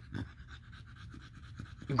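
An American Bully dog panting softly with its mouth open.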